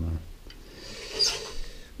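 Faint rubbing and rustling from handling an aluminium radiator, with a brief soft rustle about a second in.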